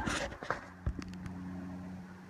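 Hiking-boot footsteps scuffing and knocking on loose trail rocks and leaf litter, with a heavier thump just before a second in. A steady low hum sets in about half a second in and carries on.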